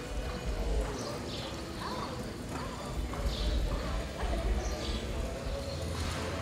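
Horses walking on soft arena dirt, their hoofbeats scattered and uneven, with voices in the background.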